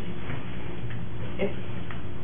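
Steady room background noise with a faint hum, and a few faint ticks about half a second apart.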